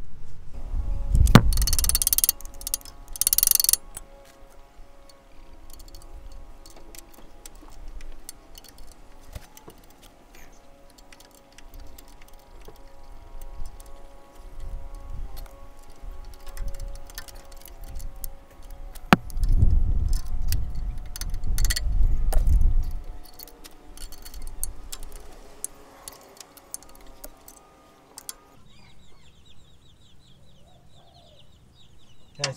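Hands working a brake hose fitting and its metal parts, with scattered small metallic clicks and clinks while trying to start the fitting's thread. Loud rustling and bumping close to the microphone comes about two to four seconds in and again around twenty seconds in.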